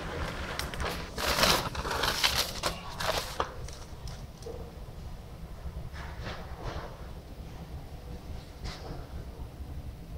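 Rustling and scraping handling noise from a handheld phone camera being moved, loudest in the first few seconds, then a low steady rumble with a few faint clicks.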